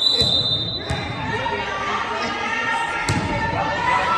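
A referee's whistle blows for just under a second to signal the serve. Then a volleyball is struck sharply about a second in and again about three seconds in. Crowd chatter runs throughout, and the gym echoes.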